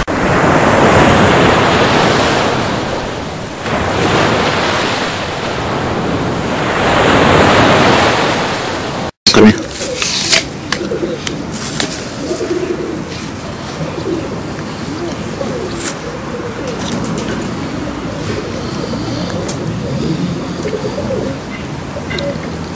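Loud rushing water noise that swells and fades twice, like surf. After an abrupt cut about nine seconds in, it gives way to a quieter outdoor background of cooing doves and scattered sharp clicks.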